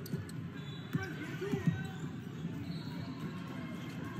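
Gym game sound from a basketball court: a few thumps of a basketball bouncing on the hardwood floor, over a background of spectators' voices.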